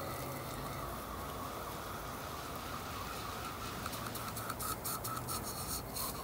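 Garden hose spray nozzle spraying water over a fishing rod and reel: a steady hiss of spray, turning into irregular spattering from about four seconds in as the stream hits the reel.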